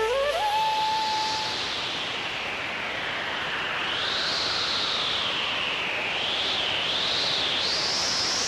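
Music from a Hindi film-song compilation. A held synth tone dips in pitch, glides back up and fades, then a swelling, wavering noise sweep rises in pitch toward the end, as in a song's transition or intro effect.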